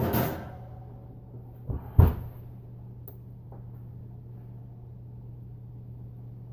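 Kitchen oven door opened with a clanging knock that rings briefly, then shut with a louder bang about two seconds in, over a steady low appliance hum.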